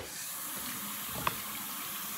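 Tap running steadily into a bathroom sink for a rinse during a wet shave, with one light click a little past a second in.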